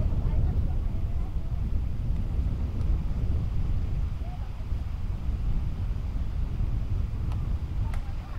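Steady low rumble of wind buffeting the microphone on an open beach, with faint distant voices underneath.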